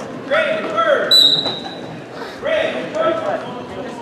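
A referee's whistle blows once about a second in, one steady high note lasting under a second. Before and after it come loud shouts from coaches and spectators.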